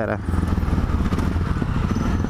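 Yamaha XT 660Z Ténéré's single-cylinder engine running steadily as the motorcycle rides through slow traffic.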